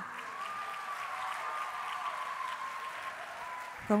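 An audience applauding steadily, clapping in welcome as a band comes on stage.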